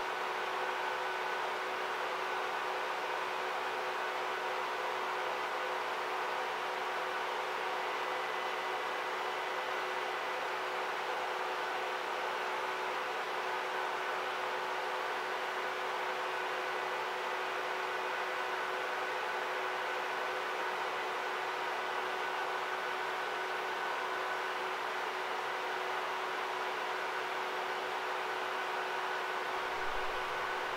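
Steady hum and hiss of running video projectors' cooling fans, with a few faint steady whining tones and no change throughout.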